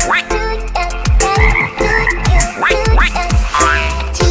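Cartoon frog croaking sound effects over an upbeat children's-song backing track with a regular drum beat.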